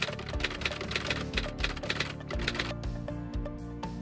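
Background music with a rapid keyboard-typing sound effect, quick clicks that thin out in the last second or so.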